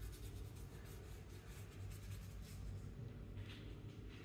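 Faint, quick, scratchy strokes of a flat brush laying acrylic paint onto a canvas panel, several in succession, thinning out near the end.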